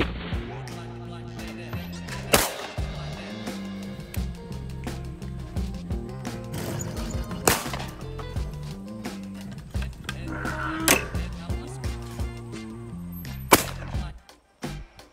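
Background music with four loud shotgun shots at intervals of a few seconds, the last near the end, where the music stops.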